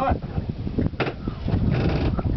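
Wind buffeting the microphone on an open boat, with a sharp knock about a second in and a rattle of ice and fish being shifted in an ice box near the end.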